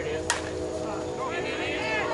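A slowpitch softball bat striking the ball once, a sharp crack about a third of a second in, followed by players shouting.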